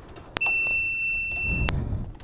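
A bright bell-like ding: one ringing tone held for about a second and a half, starting and stopping sharply with a click at each end.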